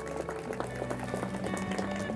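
Background music with sustained notes, laid over applause: a dense patter of hand claps from the wedding guests.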